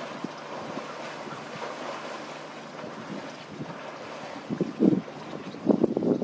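Wind buffeting the microphone, a steady rushing noise, with a few louder low bursts near the end.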